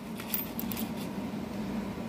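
Faint clicks of nickels being pushed and turned in an opened paper coin roll, over a steady low hum.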